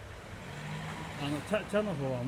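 A man's low voice murmuring without clear words: a drawn-out hum, then a few short syllables near the end.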